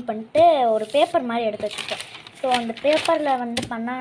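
A woman speaking, with a short rustle of paper about two seconds in and a single sharp knock on the table near the end.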